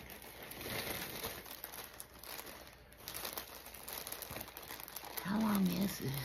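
Plastic packaging bag crinkling and rustling as it is handled and opened, in irregular bursts. A brief wordless vocal sound comes near the end.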